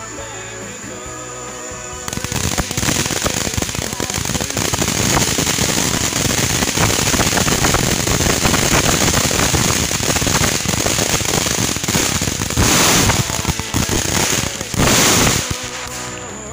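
Ground-level consumer fireworks crackling: a dense, rapid run of many small sharp reports starting about two seconds in, with two louder bursts of hissing near the end.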